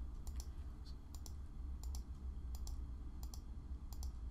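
Computer mouse button clicking, a quick pair of clicks about every three-quarters of a second, six times, each placing a point on a curve being drawn. A low steady hum runs underneath.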